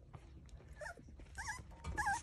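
Mini goldendoodle puppies whimpering: about three short, high-pitched whines, each rising and falling, in the second half.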